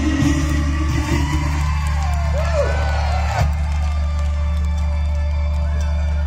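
Instrumental backing music of a Taiwanese Hokkien pop ballad playing loud through the PA, with a steady bass line. A male singer's held note ends about a second and a half in, and a few calls from the audience follow near the middle.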